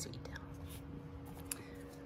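Quiet room with a steady low hum, a faint breathy whisper near the start and two soft clicks, one in the first second and one about halfway through.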